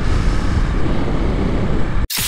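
Steady riding noise from a Honda CRF250L's single-cylinder engine on the move, mixed with wind rushing over the microphone.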